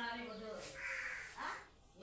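A person's voice in drawn-out, speech-like stretches, going quiet near the end.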